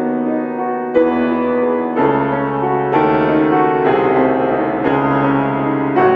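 Grand piano played solo: sustained chords with a new chord struck about once a second.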